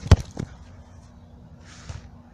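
A football kicked close by: one sharp, loud thump just after the start, followed by a weaker knock.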